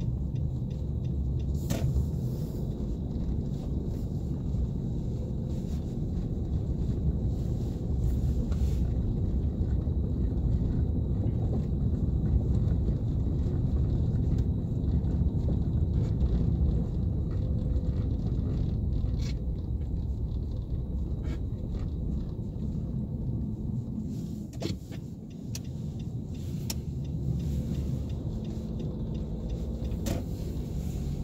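Car cabin road noise while driving on snow-covered streets: a steady low rumble of engine and tyres, heard from inside the car, with a few faint clicks. It briefly drops quieter near the end.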